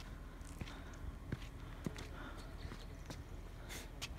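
Faint footsteps scuffing on bare sandstone slickrock, a few soft clicks over a low steady rumble.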